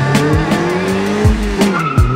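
A 2006 Suzuki Swift Sport's engine revving up through an aftermarket exhaust, its pitch rising over about a second and a half, under music with a heavy bass beat.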